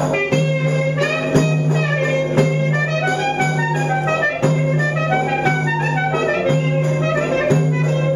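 Greek folk dance music: a melody moving over a steady low drone, with a frame drum struck about once a second.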